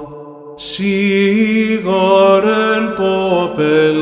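Byzantine chant: a cantor singing the apolytikion in long held notes that step up and down in pitch. The singing breaks off for about half a second at the start, then resumes with a drawn-out melisma.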